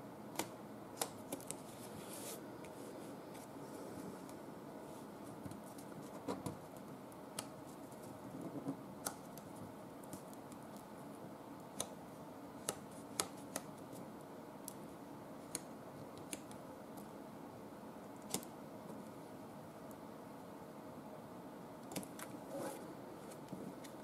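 Faint paper handling: fingers rolling back the folded strips of patterned paper on a card, giving scattered small clicks and brief rustles at irregular intervals over a low steady room hum.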